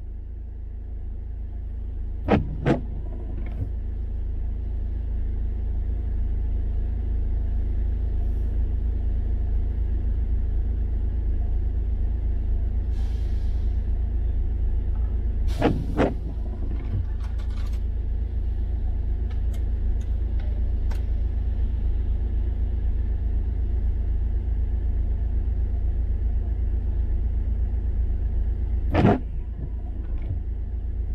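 Steady low rumble of a car standing at an intersection, heard from inside the cabin. Short sharp clicks sound about every thirteen seconds, once or twice each time.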